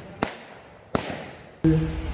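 Two rifle shots with blank rounds, less than a second apart, each ringing out in an echoing tail.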